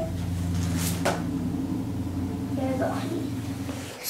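A steady low hum runs under a few light knocks and clatters, as of objects handled at a toy kitchen sink. The hum fades just before the end.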